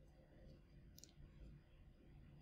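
Near silence: room tone with a faint low hum, and one short faint click about a second in.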